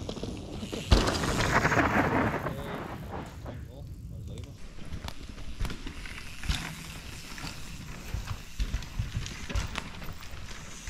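A mountain bike lands a jump with a thump about a second in, then its tyres rush over the dirt past the camera, with the rapid ticking of a freewheeling hub. After that come scattered knocks and rattles of a bike riding over roots and bumps.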